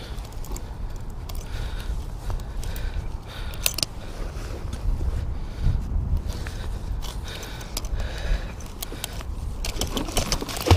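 Small metal clicks and clinks of pliers working a hook out of a musky's mouth, over a steady low wind rumble on the microphone.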